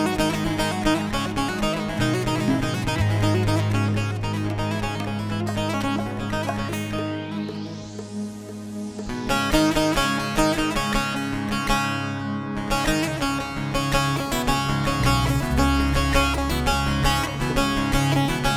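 Instrumental introduction on a bağlama (long-necked Turkish saz), plucked in quick melodic runs, with keyboard accompaniment holding sustained low bass notes. The music drops back briefly about eight seconds in, then returns at full strength.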